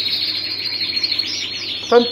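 Canaries chirping in a breeding aviary: a dense, steady high chirping chorus, with a run of quick falling chirps repeating from about halfway through.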